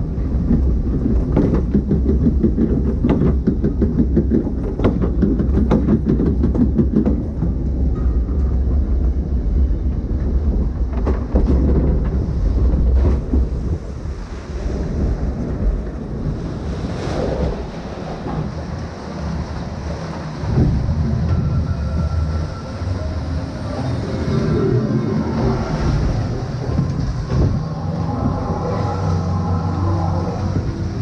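Log flume boat ride: a low rumble with rapid clattering as the boat rides the lift conveyor and crests the top, then rushing and splashing water as the boat drops and runs on through the water channel, with a faint tone near the end.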